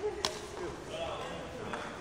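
Badminton racket striking a shuttlecock twice during a rally, two sharp cracks about a second and a half apart.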